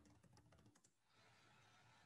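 Near silence: room tone with a few faint computer-keyboard clicks in the first second.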